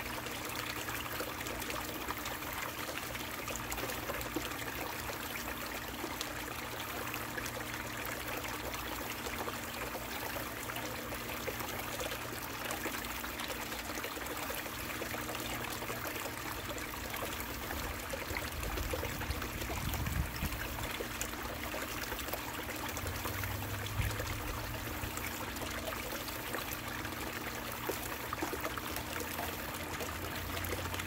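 Water running down a mini long tom gold sluice and pouring off its end into a bucket: a steady splashing flow, with a faint steady low hum beneath it. A couple of low thuds come past the middle.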